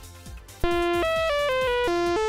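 DIY modular synthesizer oscillator playing a quick run of notes through a Steiner-Parker filter, starting about half a second in. The tone is bright and buzzy, and each note lasts a fraction of a second, stepping down in pitch and then jumping up and down.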